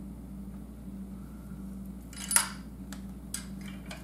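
Small bench vise being tightened on a wire: one sharp metal clink of the vise handle about two seconds in, then a few lighter clicks, over a steady low hum.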